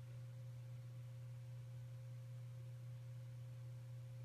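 A steady low hum, one unchanging low tone with a faint higher tone above it, and nothing else.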